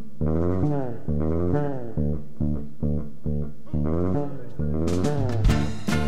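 Live band music: electric bass and plucked strings play a repeating riff, and drums and cymbals come in about five seconds in.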